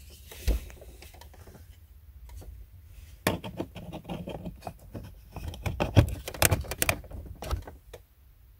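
Hard plastic clicks and knocks as an ELM327 Wi-Fi OBD2 adapter is pushed and worked into the car's OBD2 port under the dashboard. There is one knock about half a second in. From about three seconds in comes an irregular run of sharp clicks, loudest a little past halfway.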